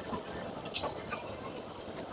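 Passenger train running along the track, heard from on board: a steady rumble of wheels on rails, with one sharp metallic clink a little under a second in.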